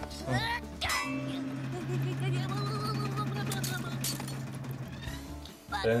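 Cartoon soundtrack: a brief voice, then about four seconds of music under a quick run of metallic clanging and clinking, fitting cartoon shovel-digging sound effects.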